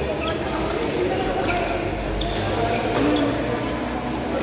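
Badminton rally: a few sharp racket-on-shuttlecock hits, the strongest about three seconds in, over background voices in the hall.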